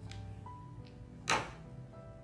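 Soft background music with a simple melody. About a second and a quarter in comes one brief loud swish: yarn drawn quickly through the crocheted stitches as the sewing needle is pulled out.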